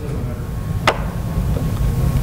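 A single sharp plastic click about a second in, over low handling rumble: the scoop stretcher's head-end length adjustment locking into place as the stretcher is lengthened.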